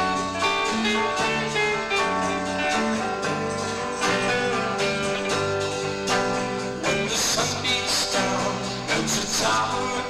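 Live rock band playing: electric guitars, bass guitar and a drum kit on a steady beat, with louder cymbal crashes about seven and nine seconds in.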